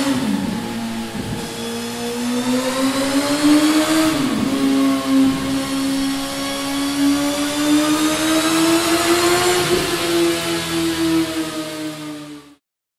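Suzuki GSX-S 1000 Katana's inline-four engine running through a Mivv Ghibli S stainless slip-on silencer. Its pitch climbs steadily as the revs rise, dipping briefly near the start, about four seconds in and again near ten seconds before climbing on.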